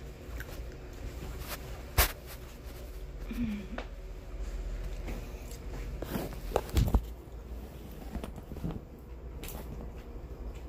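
Handling knocks: one sharp knock about two seconds in and a couple of heavier thumps around seven seconds, over the steady low hum of a room fan.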